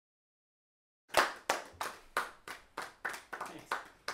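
A small audience of a few people applauding: scattered hand claps at about three a second, starting about a second in.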